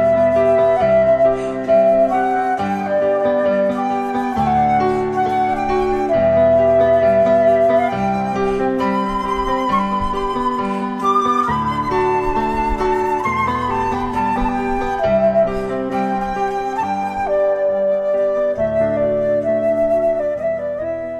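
Silver concert flute playing a melody of held notes, with a lower accompaniment sounding underneath.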